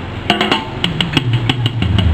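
A live blues band kicking off a song: a quick run of sharp drum hits over a bass guitar line stepping downward, leading into the first chords.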